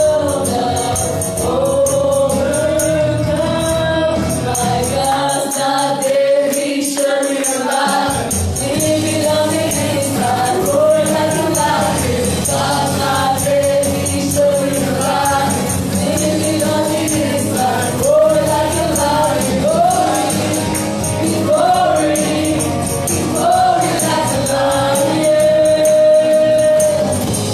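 A woman singing a gospel worship song through a microphone over live accompaniment, with other voices joining in; the bass drops out for a couple of seconds about five seconds in.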